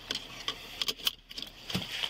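Several short clicks and rattles as a car seatbelt is pulled across a seated person and buckled, with handling noise against a body-worn camera.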